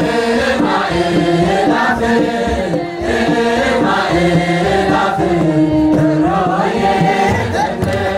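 A mixed choir of men and women singing an Orthodox mezmur (hymn) together, a chanted melody carried by many voices.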